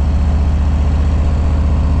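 Motorcycle engine running steadily at low road speed, a low, evenly pulsing note with no change in revs.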